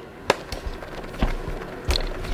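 Three sharp clacks and knocks, the last the loudest, with rustling and rumbling handling noise between: a plastic snake tub being pulled out of a metal rack system.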